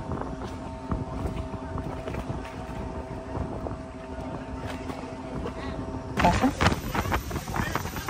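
Boat machinery humming steadily, with several held tones, beside a moored yacht. About six seconds in this gives way to a louder rush of wind on the microphone aboard a small inflatable tender running across open water.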